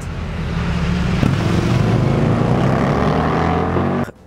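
A motorcycle engine running steadily, growing a little louder over the first second, then cut off abruptly at the end.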